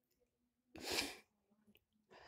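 A single short, noisy breath close to the microphone, lasting about half a second, about a second in, in an otherwise near-silent pause.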